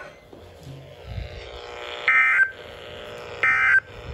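Two short warbling two-tone data bursts from a Midland weather radio's speaker, about a second apart. They are the EAS/SAME end-of-message code that follows the spoken test message.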